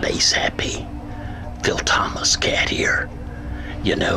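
A man speaking in short phrases, with a low steady tone underneath from about a second in.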